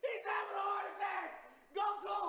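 A man's voice wailing in long, drawn-out cries over someone lying motionless, one cry held for about a second and a half before falling away in pitch, and a second cry starting near the end.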